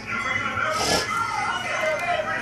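A toddler's short breathy vocal sound about a second in, over a television playing music and talk in the background.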